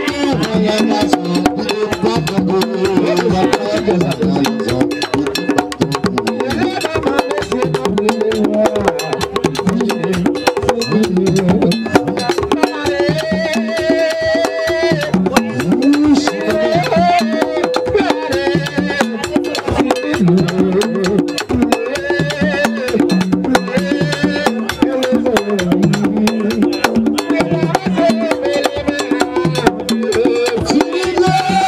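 Haitian Vodou ceremonial drumming with a dense, rapid beat, and voices singing a chant over it, with held notes near the middle.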